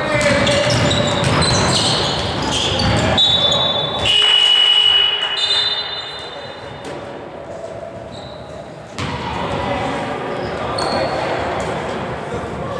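A basketball bouncing on a hardwood court, with players' voices. About four seconds in comes a loud, steady, high whistle blast lasting about a second and a half: a referee's whistle stopping play.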